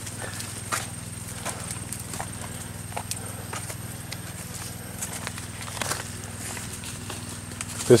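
Footsteps on a dirt path, a few soft scattered steps, over a steady low hum.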